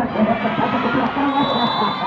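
Crowd of spectators at a volleyball match: a steady din of many voices talking and shouting at once.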